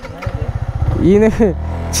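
Yamaha MT-15's 155 cc single-cylinder engine pulling away at low speed, its rapid firing pulses running through the first second and then settling to a steady low hum.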